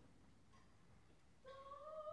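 A near-silent pause in an operatic performance, then about one and a half seconds in a single high voice enters alone on a held sung note that rises slightly.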